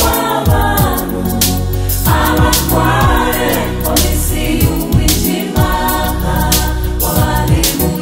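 Rwandan gospel choir singing in harmony over instrumental accompaniment with a steady beat.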